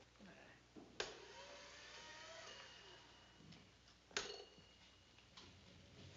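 Two sharp clicks, about a second in and again just after four seconds, from a television set's channel knob being turned. Faint, indistinct voices come from the set between them.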